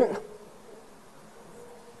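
The tail of a man's word over a microphone, then a pause of quiet room tone with a faint steady hum.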